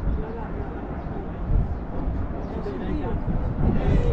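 Wind buffeting the microphone, with people talking indistinctly in the background.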